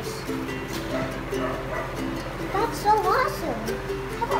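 Light background music of held plucked-string notes, with a child's voice rising and falling briefly about two and a half seconds in.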